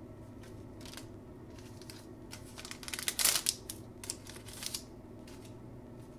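Wrapper of a trading-card pack being torn open and crinkled by hand, in several short crisp rustles, the loudest a little past the middle.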